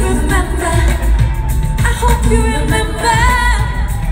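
Live pop/R&B concert music with heavy, boomy bass and a woman singing, recorded from the audience. About three seconds in, the voice sings a wavering run.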